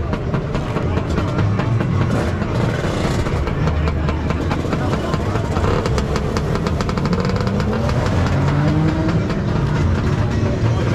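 Motor scooter engines running, with engine pitch rising as one revs up from about the seventh second.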